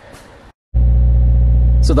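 Faint handling noise, then after a brief cut a loud, steady low drone starts less than a second in: a 2017 Subaru WRX's turbocharged flat-four idling, heard from inside the cabin.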